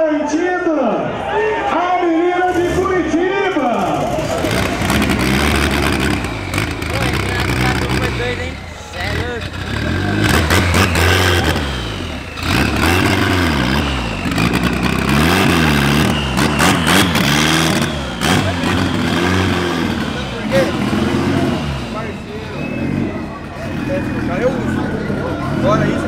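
A turbocharged VW Santana drag car's engine revving again and again, its pitch rising and falling over a heavy low rumble, with voices over it in the first few seconds.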